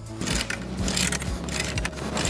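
Chain-walker stretcher bar puller being worked to draw up more tension on high-tensile woven wire fence, giving an irregular series of metallic clicks. Background music plays underneath.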